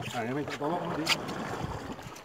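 Indistinct talking over a steady background of wind and water noise on a small boat, with a sharp click about a second in.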